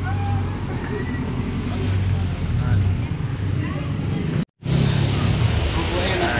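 Steady low rumble of motor vehicles with faint chatter of voices over it. The sound cuts out for a split second about four and a half seconds in.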